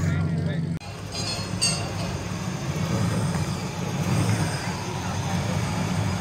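Low, steady engine rumble that breaks off abruptly less than a second in, followed by the V8 of an early-1960s Dodge Polara convertible running at idle.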